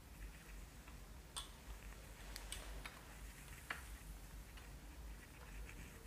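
Faint sounds of hands massaging a face: quiet rubbing of palms and fingers over skin, with a few scattered soft ticks, the clearest a little before four seconds in.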